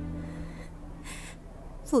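Two short, sharp breaths drawn in by a person, about a second apart, as held background music fades out; speech begins at the very end.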